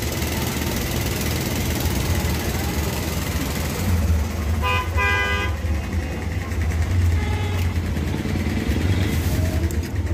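Street traffic: a steady low engine hum with a vehicle horn tooting, one short toot and then a longer one, about five seconds in.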